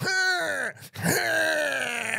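A man singing in a drawn-out, carol-style voice without clear words: a short phrase falling in pitch, a brief break, then one long held note that slowly slides down.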